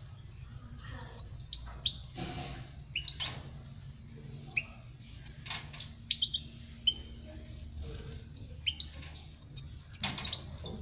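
European goldfinch giving scattered short chirps and twittering call notes, some sharp and high, with pauses between them. A few soft taps come in among the calls.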